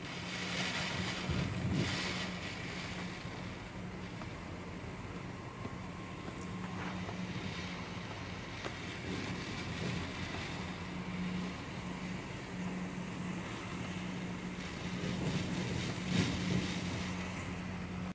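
Tropical-storm wind and rain heard through a closed, rain-spattered window, with a steady low hum underneath. The wind swells about two seconds in and again near the end.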